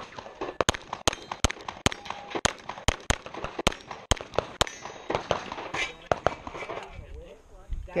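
Semi-automatic pistol fired in a fast string of about ten shots, roughly two a second, over the first four and a half seconds. A few fainter knocks follow before the firing stops.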